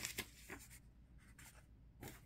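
Faint rustles and light scuffs of printed photo paper being handled and laid down on a bedspread, a few in the first second and little after.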